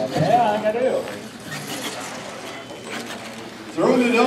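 Voices in an indoor hall, loudest in the first second and again near the end, with a quieter stretch of even background noise between. Underneath, a radio-controlled monster truck runs across a carpeted floor, its drivetrain and tyres faintly audible.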